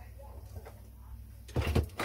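Low steady hum, then a brief rustling clatter about one and a half seconds in: wire and multimeter probes being handled on a silicone work mat.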